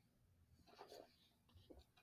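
Near silence, with a few faint gulps about a second in and again near the end as beer is swallowed from a glass.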